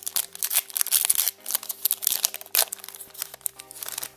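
Foil wrapper of a Pokémon card booster pack crinkling and tearing as it is ripped open by hand: a dense run of crackles, busiest in the first two and a half seconds and thinning out after that.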